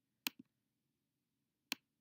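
Sharp computer mouse clicks, two about a second and a half apart, the first followed at once by a softer second tick, as a block is grabbed and moved on screen.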